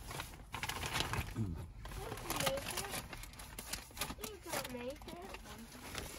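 Plastic food packaging crinkling and rustling as it is handled, in quick irregular crackles.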